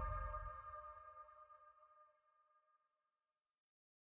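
The closing note of a hardcore electronic track ringing out and fading away: a deep rumble dies within about a second and a half, while a higher ringing tone lingers to near the end and fades to silence.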